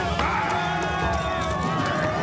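Cartoon soundtrack: voices calling out over a fast, steady low thudding.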